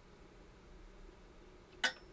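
Small screwdriver adjusting the voltage trimmer of a switching power supply: faint room tone, with one short, sharp click near the end as the tool touches the unit.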